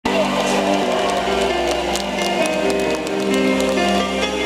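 Live pop band music from the stage PA, held chords shifting every second or so, with scattered sharp clicks in the first couple of seconds.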